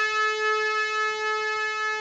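Harmonium playing one long held note, a steady reedy tone rich in overtones.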